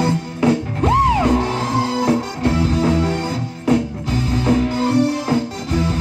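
A live band playing with electric guitars, bass, drums and keyboard, a steady beat. About a second in, a single high note swoops up and back down, then holds briefly.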